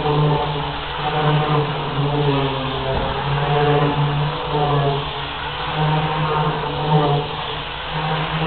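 Voices chanting in a low, steady drone, the held pitch breaking briefly every second or so.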